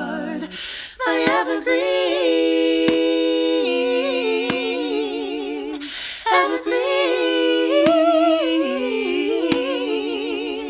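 One woman's voice layered into four-part a cappella harmony, singing long wordless held notes with vibrato, with short breaths between phrases about a second in and again near six seconds. Faint sharp clicks fall roughly every second and a half under the chords.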